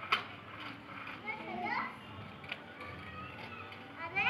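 Young children's voices, high-pitched calls rising and falling in pitch during play, with a sharp click right at the start and another about two and a half seconds in.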